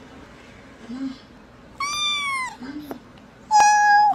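A young kitten meowing twice, high-pitched: one meow about two seconds in and a louder one near the end.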